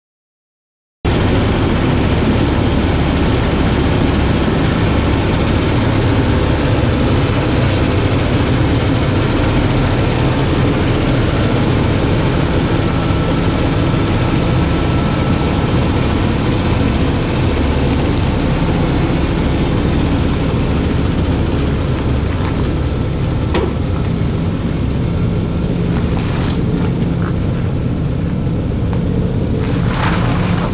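A heavy diesel truck engine running steadily close by, with wind rumbling on the microphone. It starts abruptly about a second in and stays at an even level, with a few faint clicks.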